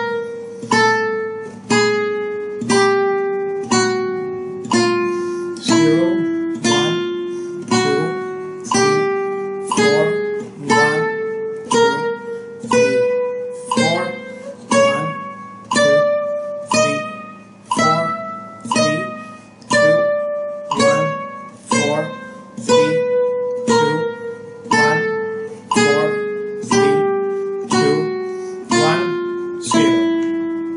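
Nylon-string flamenco guitar playing a slow chromatic scale on the first string, one plucked note about every second, each left to ring. The notes step down by semitones, climb back up to the top of the run about halfway through, then step down again.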